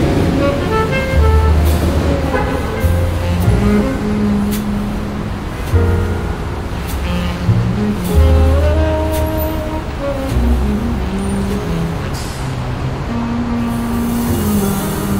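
Smooth jazz with a low bass line moving note by note under melodic lines and light percussion, over a steady background of city traffic ambience.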